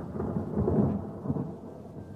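Low rolling rumble of thunder in uneven surges, loudest about a second in and easing toward the end.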